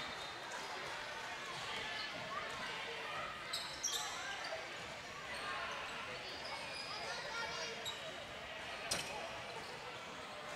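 Basketball court in play, heard faintly: a low murmur of crowd and player voices, a few short high squeaks about four seconds in, and a single ball bounce near the end.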